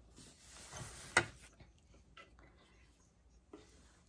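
A metal spoon knocking and scraping in a mixing bowl while scooping thick no-bake cheesecake filling: one sharp click about a second in, then a few faint ticks.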